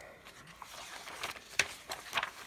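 Paper pages of a spiral-bound book being turned over by hand: soft rustling and a few quick flaps of paper, the sharpest about one and a half seconds in.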